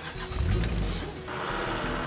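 Background music over the low rumble of a car engine. About halfway through, an even hiss of tyres on concrete joins in.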